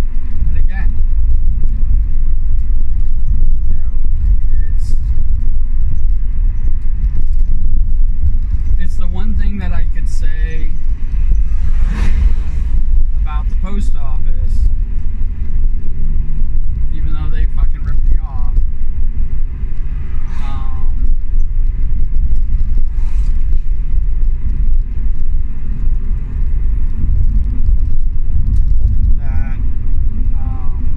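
Steady low road and engine rumble inside a moving car's cabin, with a few brief snatches of a voice.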